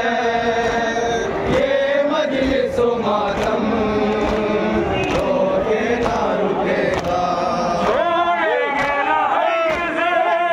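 A crowd of men chanting a noha (Shia mourning lament) in unison. Chest-beating slaps of matam come again and again along with the chant.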